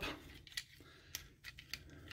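A few faint clicks of hard plastic as the parts of a Transformers Studio Series 86 Jazz figure are handled and tabbed into place in car mode.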